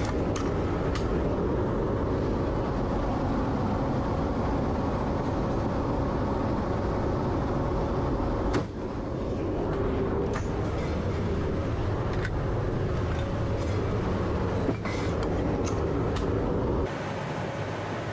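Steady drone of the AC-130J's four turboprop engines heard inside the cargo hold, with a few sharp knocks. Near the end it changes abruptly to a thinner cabin sound with less rumble.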